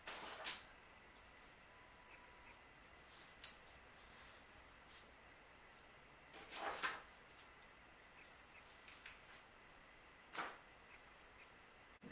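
Near silence broken by a handful of short, faint rustles and knocks as dry grapevine twigs are picked up and pushed into floral foam. The longest comes about seven seconds in.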